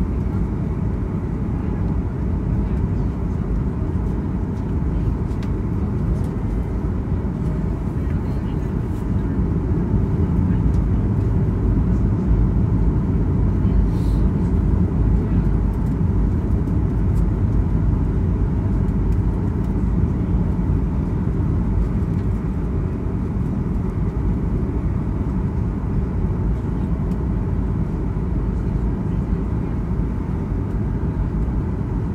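Boeing 737 cabin noise on final approach: a steady rumble of the CFM56 engines and airflow, heard from a window seat over the wing, a little louder for several seconds midway.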